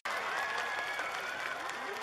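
Audience applauding outdoors after a song ends, with a few faint voices calling out over the clapping.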